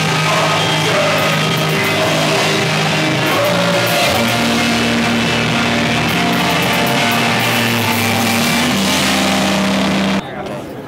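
Live band playing electric guitar, bass guitar and drum kit, holding long sustained chords. The chord changes about four seconds in and again near the end.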